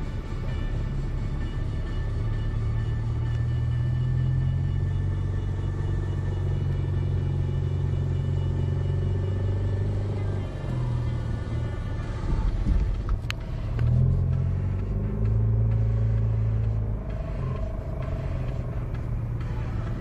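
Low rumble of a car's engine and tyres heard from inside the cabin as it drives slowly in traffic, with one sharp click about thirteen seconds in.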